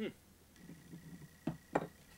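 A man's short falling "hmm" as he takes in the beer's aroma, then two short knocks near the end as a glass of beer is set down on a countertop.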